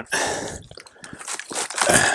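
Water sloshing and swishing around a person wading waist-deep as he shifts his legs, with a louder swish at the start and another near the end and a few small clicks in between.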